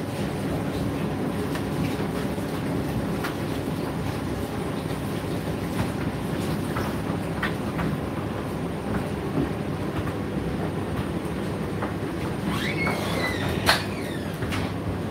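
Indesit condenser tumble dryer running: a steady drum rumble and motor hum, with scattered light clicks from the tumbling load. Near the end a brief squeak is heard, followed by a sharp click.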